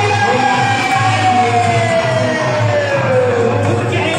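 Devotional kirtan singing: a voice holds one long note that slides slowly down in pitch, over a repeating drum beat.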